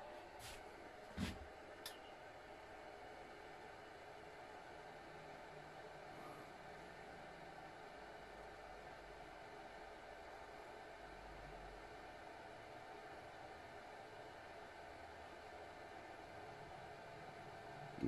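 Near silence: faint steady room tone, with a few light clicks in the first two seconds.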